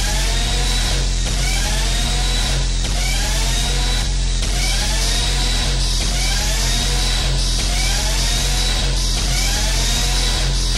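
Hardcore techno music: a fast, steady kick drum under a distorted synth line that slides upward in pitch over and over, about once a second.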